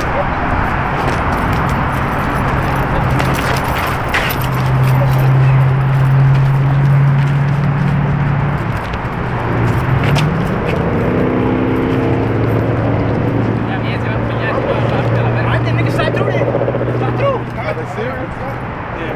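A car engine running steadily nearby, its pitch rising about ten seconds in and then holding higher for several seconds.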